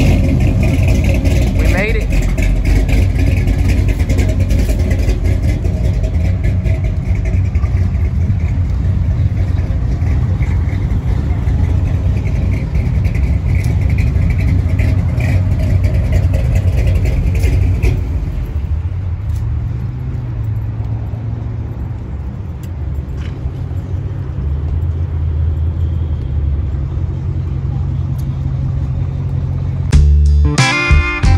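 Classic cars' engines idling with a steady deep rumble: a 1963½ Ford Galaxie, then a 1955 Chevrolet.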